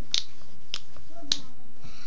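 Three sharp finger snaps, evenly spaced a little over half a second apart, keeping time between sung lines.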